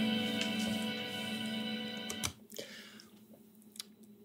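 Electric guitar chord played through a Vox MVX150H amp, left ringing out and slowly fading, then cut off suddenly a little over two seconds in. A few faint clicks follow in the quiet.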